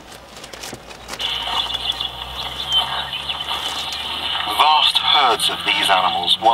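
Audio from a small portable TV receiver's speaker: the broadcast sound cuts out as the set searches for the channel, then a steady high hiss returns about a second in, and a voice from the broadcast comes back near the end.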